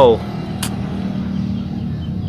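A steady low motor hum, with a single short click about two-thirds of a second in.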